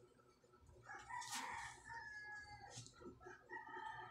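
A rooster crowing, faint: one crow of nearly two seconds beginning about a second in, then a second crow starting near the end.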